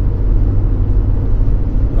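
Steady low rumble of a car's engine and tyres heard from inside the cabin while cruising at highway speed.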